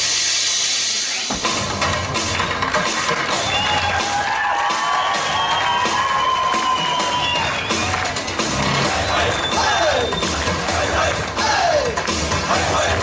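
Turkmen folk dance music for the kushtdepdi starting up, with a steady drum beat coming in about a second in and a melody line above it, over a background of audience noise.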